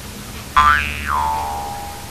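A comedy 'boing'-style sound effect about half a second in: a pitched tone that jumps in suddenly, slides down and settles on a lower note, then fades out.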